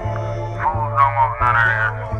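A mid-1990s underground hip-hop track: a steady bass note with a drum hit about every 0.7 s, and a vocal line over the beat in a short gap between rapped lines.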